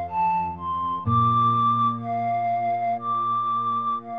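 Slow instrumental lullaby: a flute plays a gentle melody of long held notes, about one a second, over a sustained low accompaniment that changes chord about a second in.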